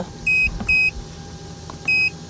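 Autel AutoLink AL539B handheld scan tool beeping as its keys are pressed while stepping through its menus to the multimeter function: three short high beeps, two close together about a quarter-second in and one more near the end.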